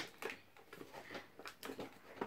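Cardboard toy packaging being handled and pried open by hand: a sharp click at the start, then a scatter of faint rustles and small clicks.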